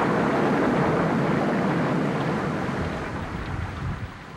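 Storm sound effect: a loud, even rushing noise that fades slowly toward the end.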